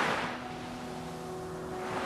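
Sea waves washing onto a pebble beach: one wash dies away at the start and the next builds near the end, under soft, sustained background music notes.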